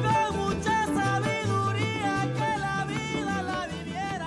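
A son jarocho song from Veracruz: a sung melody over string accompaniment and a bass line keeping a steady beat.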